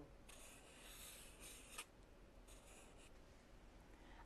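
Faint marker scratching across flip-chart paper as the numeral 2 is written: a scratchy stroke of over a second ending in a light tick, then a shorter stroke.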